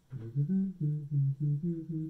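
A man humming a short tune with his mouth closed, a quick run of separate low notes changing pitch every quarter-second or so.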